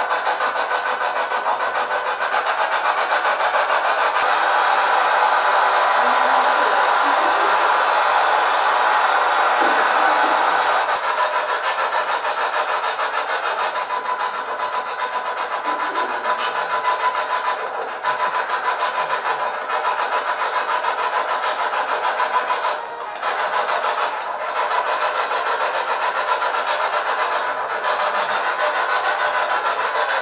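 Loud, steady hiss like static, with a faint steady tone in it; the hiss thins a little about eleven seconds in and drops out briefly a couple of times in the second half.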